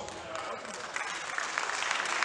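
Audience applauding, the clapping picking up about a second in.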